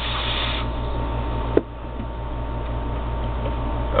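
A vape hit through a Mutation V3 rebuildable dripping atomizer with a 0.38-ohm sub-ohm coil at 50 watts: a steady hiss of air drawn through the atomizer as the coil fires, strongest in the first half second, with one sharp click about one and a half seconds in.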